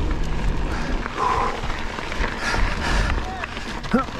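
Wind buffeting the microphone of a chest-mounted action camera over the steady rumble of mountain bike tyres rolling fast on gravel, with faint vocal sounds from the rider about a second in and again a little later.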